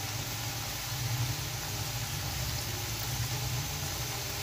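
Potato sticks deep-frying in hot oil in a karahi: a steady sizzle of bubbling oil, with a steady low hum underneath.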